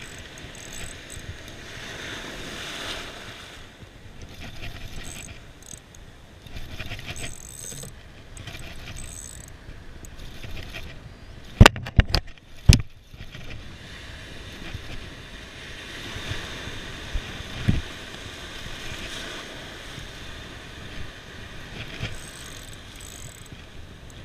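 Spinning reel being cranked steadily, winding in line against a hooked bluefish, over the wash of surf and wind. About halfway through, a quick burst of sharp knocks as the hand bumps the camera.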